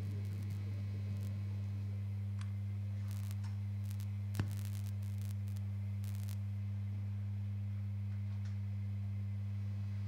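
Steady low electrical mains hum from the band's amplifiers and PA between songs. A single brief click comes about four and a half seconds in.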